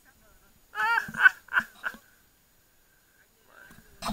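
A person's voice: a quick run of about four syllables lasting about a second, then quiet.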